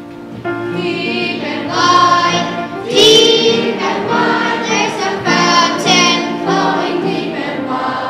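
A small group of young children singing a song together over instrumental accompaniment.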